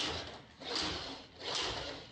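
A small toy truck pushed back and forth across a wooden tabletop, its wheels and body rolling and scraping in repeated swells about once every 0.8 seconds.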